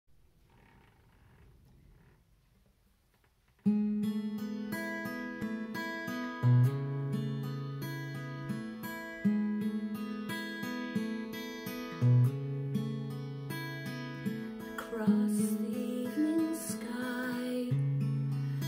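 Near silence, then about four seconds in an acoustic guitar in DADGAD tuning starts fingerpicking a slow introduction, with deep bass notes ringing under the picked notes.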